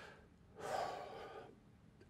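A man's soft, audible breath, a gasp-like intake lasting about a second, starting about half a second in.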